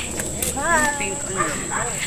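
A dog whining softly, with a few short whines that rise and fall in pitch.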